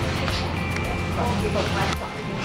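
Supermarket background: piped store music and indistinct voices, over a steady low hum that cuts off at the end.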